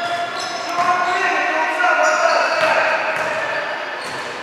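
Gym sounds during a basketball game: players' voices calling out across the hall, with a basketball bouncing on the hardwood court.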